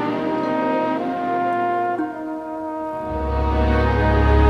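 Instrumental introduction to a slow ballad played live: long held melody notes that change about once a second, with a deep bass note coming in about three seconds in.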